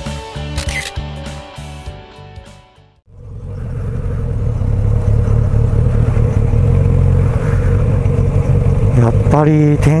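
Background music fades out over the first three seconds. Then the steady sound of a Kawasaki Z900RS motorcycle cruising at an even speed, engine drone mixed with wind rumble, fades in and holds.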